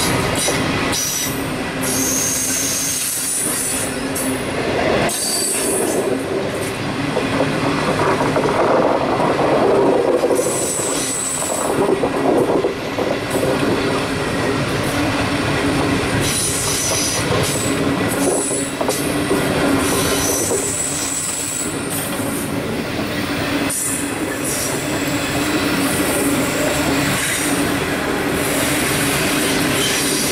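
Stainless-steel passenger carriages of a long train rolling past close by. The wheels and rails make steady noise with many clicks, and brief high-pitched wheel squeals come back again and again.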